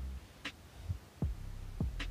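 Background music at low level: a deep held bass note that drops out just after the start, then a few soft low thuds about every half second, like a slow heartbeat, before the bass note comes back near the end.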